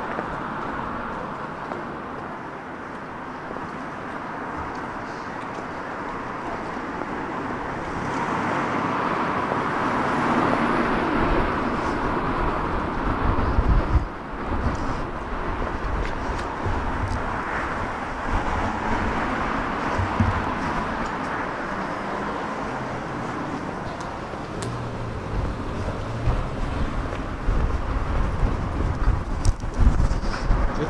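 Road traffic on a town street: a steady hum of passing cars, louder in the second half, with irregular low rumbles on the microphone.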